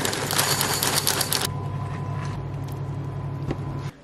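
Dry Cheerios poured from the box into a ceramic bowl: a dense rattle of many small pieces landing for about a second and a half, then a softer pour. A steady low hum runs underneath.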